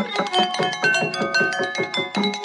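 Jalatarangam, porcelain bowls tuned with water and struck with thin sticks, playing a fast run of ringing notes.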